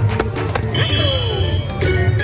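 Playful ride music from the vehicle's onboard speaker, with a few sharp taps of a hand striking the plastic egg buttons just after the start.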